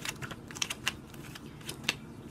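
Tarot cards being drawn and handled: a run of about ten light, irregular clicks and taps.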